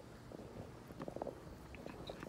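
Faint low rumble of a handheld phone microphone carried along while walking, with a few soft taps of footsteps and handling about a second in.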